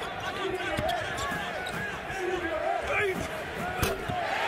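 Basketball game on a hardwood court: sneakers squeaking and the ball bouncing over a murmuring crowd, with one sharp knock near the end.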